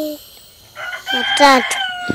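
A rooster crowing, starting about a second in and ending on a long held note.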